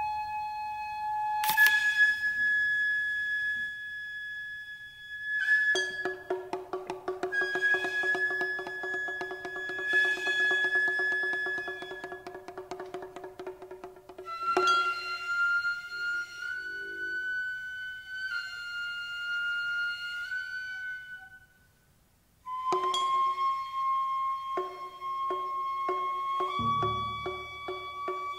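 Gagaku, Japanese imperial court music: long held wind tones that step from pitch to pitch, with a high transverse flute among them. The sound drops out for about a second near the end.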